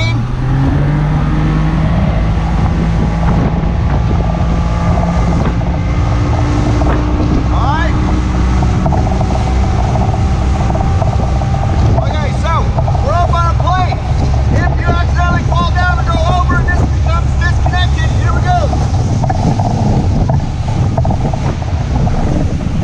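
Motorboat engine throttling up as the boat gets up on a plane: its note rises over the first couple of seconds, then it runs steadily at high speed, with wind on the microphone.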